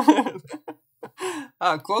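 A woman's short, breathy laugh, then she begins to speak.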